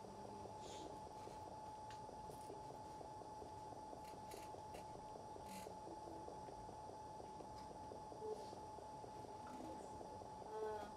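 Quiet room tone with a faint, steady high-pitched hum and a few faint clicks.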